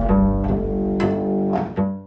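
Double bass playing a short intro phrase of a few sustained notes, the last one dying away near the end.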